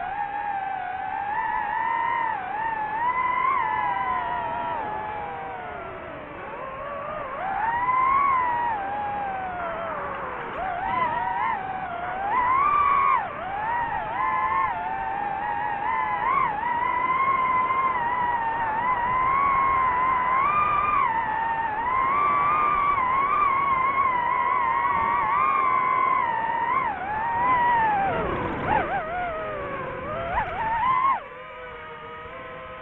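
Quadcopter drone's electric motors and propellers whining, the pitch wavering up and down constantly with the throttle. Near the end the whine drops sharply in pitch.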